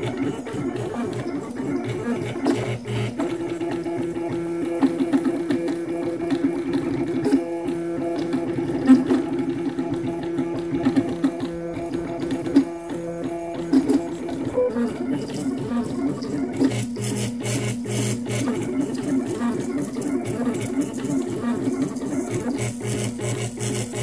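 Desktop 3D printer printing: its stepper motors whine in musical-sounding pitched notes as they drive the print head, one note held for about ten seconds before dropping to lower, wavering tones.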